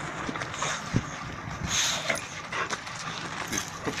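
A boxer-type dog breathing and snuffling close by as it noses at a stick, with one sharp tick about a second in.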